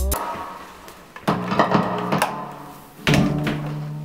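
Guitar music: a few notes plucked a little over a second in, then a chord struck near the end that rings on and fades.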